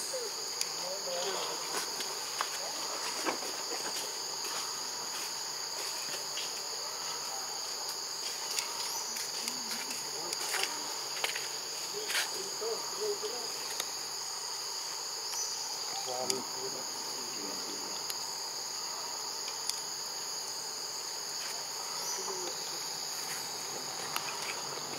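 Steady high-pitched drone of a forest insect chorus, holding two even pitches without a break, with scattered faint clicks over it.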